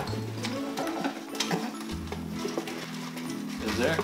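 Background music with a repeating bass line, under faint rustling and light clicks as hands rummage in a cardboard subscription crate.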